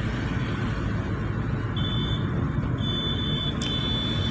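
Steady in-cabin engine and road rumble of a small car driving along at an even speed. A thin, high-pitched electronic beep sounds twice briefly, about two and three seconds in, then comes on again and holds near the end.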